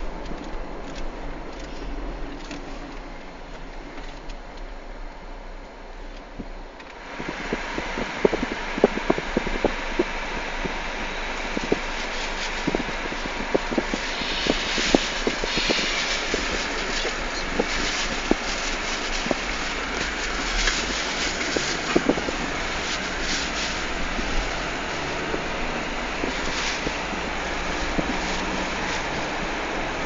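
Road noise of a moving Chevrolet Cobalt taxi. It jumps louder and brighter about seven seconds in, and many short clicks and knocks run on from there.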